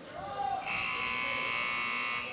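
Gymnasium scoreboard horn giving one steady, harsh buzz of about a second and a half, starting about half a second in. It signals a substitution during a stoppage in play.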